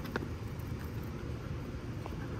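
Steady low outdoor background rumble, with a faint click near the start.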